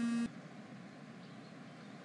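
A short hummed voice tone, rising and then held, stops a moment in. After it comes faint steady background ambience with a couple of faint, high, bird-like chirps.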